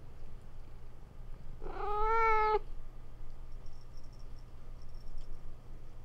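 A domestic cat meows once, a single call about a second long held at a steady pitch, about one and a half seconds in.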